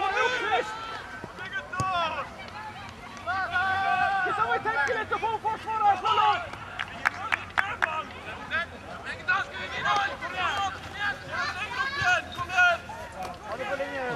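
Nearby people's voices talking and calling out throughout, with a few sharp knocks about six to seven seconds in.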